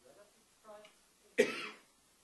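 A single short cough close to the microphone about a second and a half in, after faint, distant speech.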